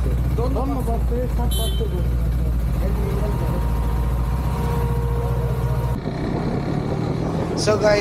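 Motorcycle engine idling with a steady low hum, with muffled voices over it. About six seconds in, the sound cuts abruptly to the motorcycle riding along the road.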